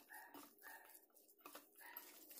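A dog's faint short high yelps, three in quick succession, over the soft squelch and clicks of a hand squeezing ground chana dal and dill batter in a steel bowl.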